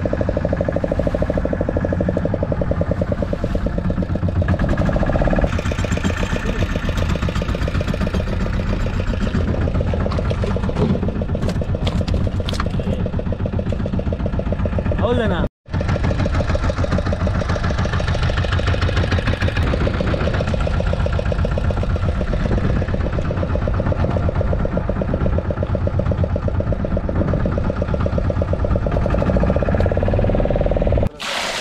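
Fishing boat's engine running steadily under men's voices, the sound cutting out for a moment about halfway through.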